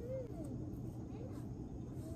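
Faint distant voices over a steady low hum, with no distinct nearby sound.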